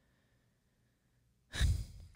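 Near silence for about a second and a half, then a short breath drawn in close to the microphone.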